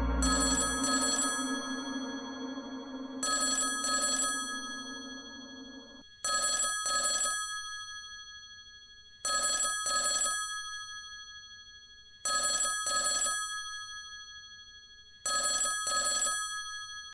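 A telephone ringing in a double-ring pattern: six pairs of short rings about three seconds apart, each pair fading away before the next. Steady background music fades under the first rings and stops about six seconds in.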